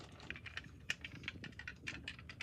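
Small, irregular clicks and taps, several a second, from a diecast model car being handled and moved about.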